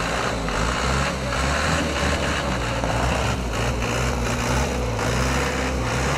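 Tow truck's engine running steadily.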